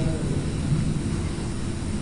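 Steady low rumble and hiss of room noise picked up by the talk's microphone in a lecture hall.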